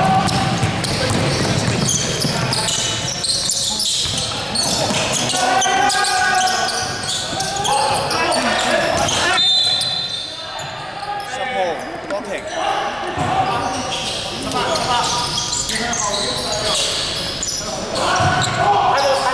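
Indoor basketball game: the ball bouncing on the wooden court amid players' voices calling out, echoing in a large sports hall.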